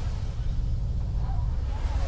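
Steady low rumble of a bus running along a wet highway, heard from inside the cabin.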